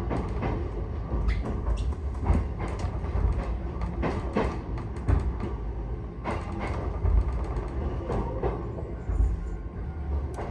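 Inside a moving electric commuter train: a steady low rumble from the running gear, broken by irregular clacks as the wheels pass over rail joints.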